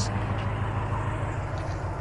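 Supercharged 6.2-litre V8 of a 2022 Ram TRX idling steadily through a straight-piped exhaust with high-flow cats, a low, even rumble.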